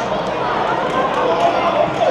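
Voices shouting and calling out on a football pitch during open play, over the steady background of an outdoor stadium.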